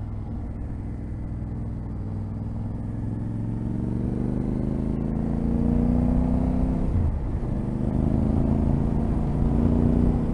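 Yamaha Ténéré 700's parallel-twin engine accelerating: its note climbs steadily from about three seconds in, breaks briefly at a gear change about seven seconds in, then climbs again, getting louder throughout.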